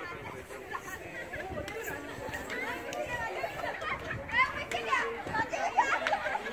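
Several people talking at once, with children's voices among them. A few louder calls stand out in the second half.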